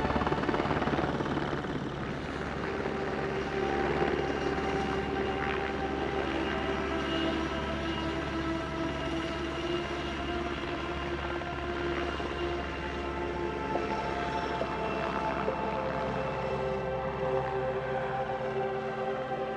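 Helicopter hovering, a steady rotor and turbine sound.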